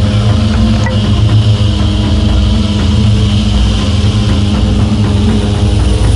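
Propeller aircraft engines droning steadily, heard from inside the cabin in flight.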